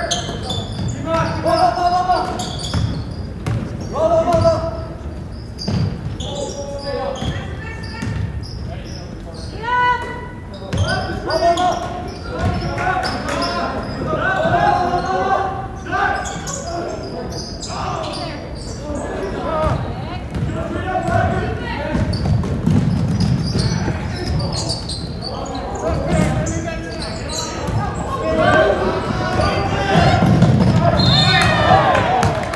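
A basketball being dribbled and bounced on a hardwood gym floor, with voices calling out across the court throughout. The sound carries the echo of a large gym.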